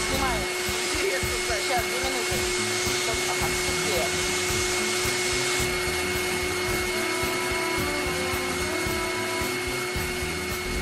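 Canister vacuum cleaner running steadily, an even rushing roar with a constant motor whine, its floor head being pushed across the floor.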